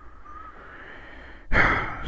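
Low room tone, then about a second and a half in, a man sighs: a short, loud breath out just before he speaks again.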